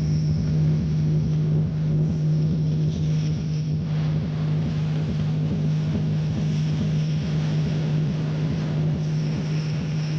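A large DJ sound system with sixteen bass speakers playing one steady, deep bass tone for a sound test, a loud unbroken hum held without a beat.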